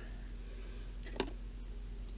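A low, steady background hum with one short, faint click about a second in.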